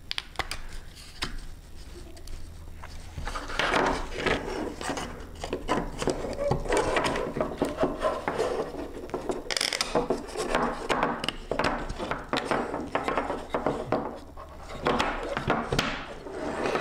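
Thin wooden panels being slotted and pressed together by hand. Light knocks, clicks and wood-on-wood rubbing go on throughout and get busier from a few seconds in.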